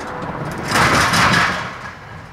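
An SUV towing an open trailer with an ATV on it drives past over the level crossing: a whoosh of tyres and engine that swells to its loudest about a second in and then fades.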